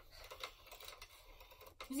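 Vintage telephone being dialled by hand: a run of faint, irregular clicks from the dial, with one sharper click just before the end.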